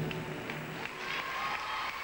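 Accompaniment music cutting off at the end of a rhythmic gymnastics routine, followed by applause and crowd noise from the arena audience.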